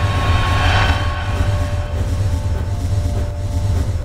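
Cinematic title sound design: a deep, steady low rumble under held drone tones, with a whoosh swelling and fading in the first second.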